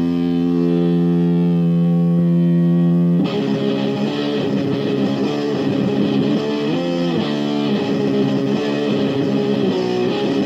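Death metal demo recording led by distorted electric guitar: one chord held for about three seconds, then an abrupt switch into a busier riff with notes moving up and down.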